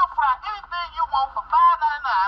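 A man's voice from a commercial, thin and tinny, playing through a laptop's small built-in speaker.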